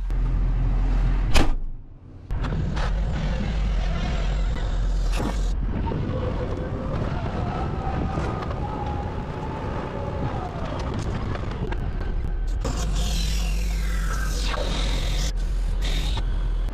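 Tractor engine running steadily, with clanks and a whine from the John Deere 2680H disk harrow's hydraulically folding wings as they move. The sound breaks off briefly about two seconds in.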